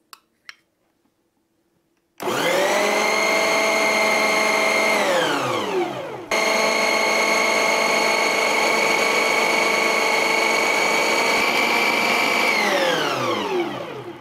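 Electric mixer grinder with a food-processor attachment creaming butter and sugar. The motor starts abruptly about two seconds in and runs with a steady whine, then spins down with falling pitch. It restarts at once, runs about six seconds more, and spins down again near the end.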